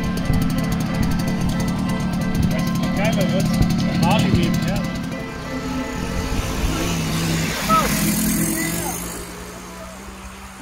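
Background music over a small two-stroke Simson moped engine running as it tows a motorcycle on a strap, with voices calling out briefly. The sound fades toward the end.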